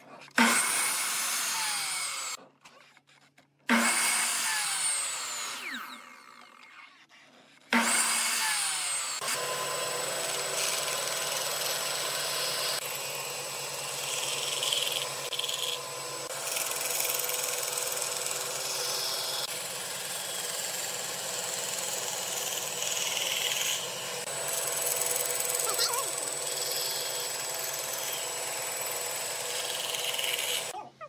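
An electric sliding compound miter saw starts up and cuts through pine boards in short bursts, its motor winding down with a falling whine after each cut. From about nine seconds in, a band saw runs steadily with an even hum while it cuts a curve in a pine board.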